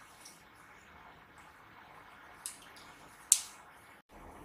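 Faint rustling of cotton fabric being handled as a stitched strip is turned right side out, with two brief sharp rustles near the end, the second the louder.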